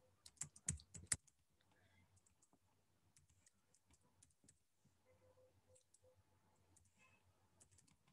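Typing on a computer keyboard: a few sharper keystrokes in the first second, then faint, scattered keystrokes.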